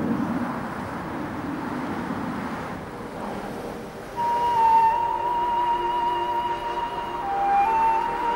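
Background noise without any clear event for about four seconds. Then a slow flute melody of long held notes comes in and continues.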